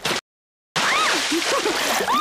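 Cartoon water-splash sound effect, an even splashing hiss that starts just under a second in after a brief dead silence, with a few short rising-and-falling tones over it.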